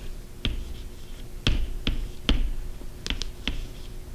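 Chalk tapping and scraping on a chalkboard while Arabic script is written by hand: about seven sharp, irregularly spaced taps with a light scratching between them.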